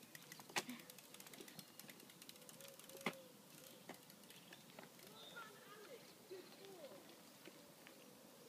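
A BMX bike's freewheel ticking rapidly and faintly as it rolls off, with two sharper clicks, one just after half a second and one about three seconds in.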